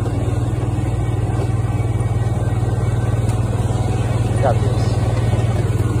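Snowmobile engine running at a steady speed while riding across the ice, a constant low drone.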